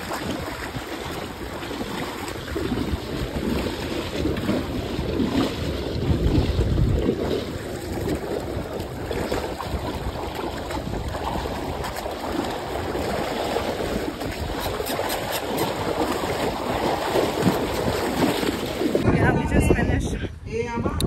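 Sea water sloshing and splashing as horses wade through the shallows, with wind gusting on the microphone. The sound changes abruptly near the end.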